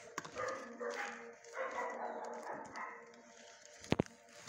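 Dogs barking in a shelter kennel block, with a sharp click just before the end.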